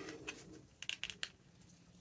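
Faint paper handling: a few soft ticks and rustles as fingers press and position a glued paper pocket on a journal page.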